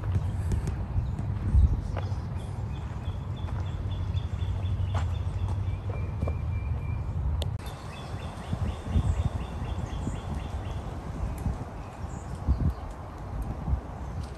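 Outdoor ambience: wind rumble and handling noise on a phone microphone, with irregular thumps from footsteps in the second half. A bird sings runs of quick, high repeated notes in two stretches of a few seconds each.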